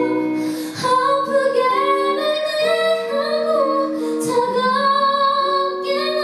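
A woman singing a ballad live into a handheld microphone, with long held notes, over soft instrumental accompaniment.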